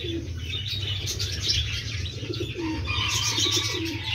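American Fantail pigeons cooing: short, low warbling coos repeated about four times, with higher chirps throughout and a steady low hum underneath.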